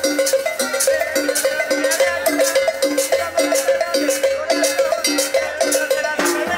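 Live Latin dance band playing: a long held note, probably from the accordion, over a lower note repeating about twice a second, with congas and sharp metal scraper strokes keeping the beat.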